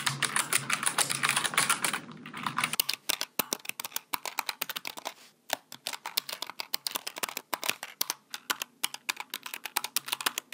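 Typing on a backlit Logitech keyboard: a fast, dense flurry of keystrokes for the first few seconds, then slower, more separate key presses with short pauses.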